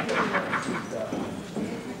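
A man laughing in short, quick bursts, strongest in the first half second, with more scattered laughter and voices after.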